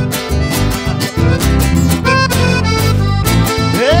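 Live band playing an instrumental passage: accordion leading over guitar, bass and a steady percussion beat. Right at the end a singer's shout rises into a held note.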